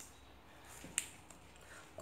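Plastic basket-weaving wire being handled, with a faint rustle and one sharp click about a second in as the strands are worked into a knot.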